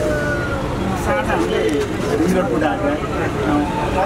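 Voices talking inside a moving electric bus, over the steady low rumble of the ride; no engine is heard.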